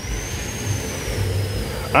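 Street traffic noise: a vehicle engine running with an uneven low rumble, and a faint thin high whine that rises and then slowly falls.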